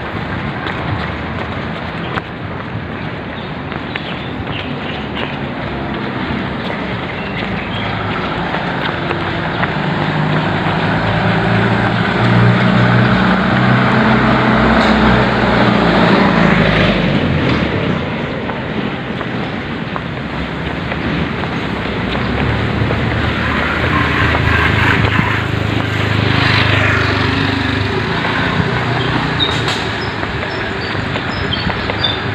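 Road traffic heard while jogging: a small tow truck's engine grows louder and passes close at about the middle, cutting off sharply as it goes by. A second vehicle swells up and passes later on.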